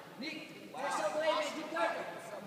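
Indistinct voices talking in a large, echoing hall, with background chatter; the talk picks up about a third of the way in.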